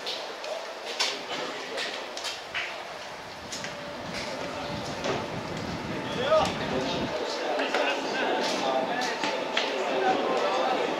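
Distant voices of football players talking and calling out across the pitch, with scattered sharp clicks and a low rumble from about four to seven seconds in.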